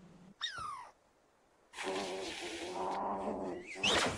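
Cartoon cat-demon vocalising: a short falling mew about half a second in, then a rough growl of about two seconds, ending with a quick rising cry.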